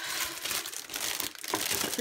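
Clear plastic bag wrapped around a boxed item crinkling steadily as it is handled.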